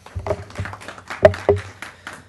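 Handling noise at a lectern microphone: a run of irregular taps and knocks close to the mic, the loudest a little past a second in.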